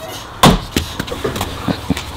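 An axe striking a log on a chopping block: one sharp, loud chop about half a second in, followed by a few fainter knocks.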